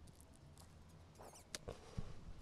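Near silence: faint outdoor background with a few soft clicks about one and a half seconds in.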